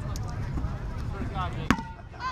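Rubber kickball kicked once near the end: a single sharp smack with a brief ring after it.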